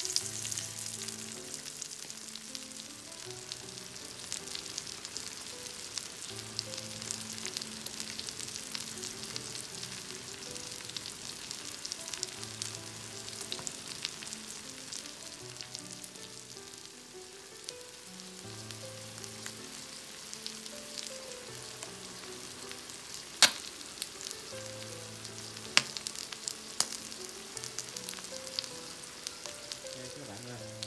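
Scallops topped with scallion oil sizzling steadily as they grill, the oil cooking into them, with light crackling and three sharp pops in the last third.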